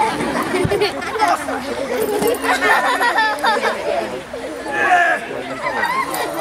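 People's voices talking and chattering, several at once, with no clear words.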